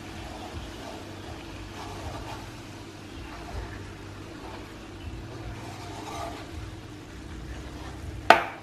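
Wooden chopsticks stirring hot coconut caramel sauce in a metal wok, with soft scraping and the liquid still faintly bubbling after coconut water was added. A steady low hum runs underneath.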